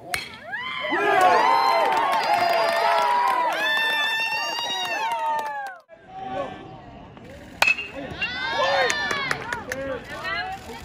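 Crowd of spectators shouting and cheering in many overlapping voices, loud for the first half and cutting off abruptly a little past halfway. About three-quarters in, a sharp metal-bat ping at ball contact, followed by more shouting.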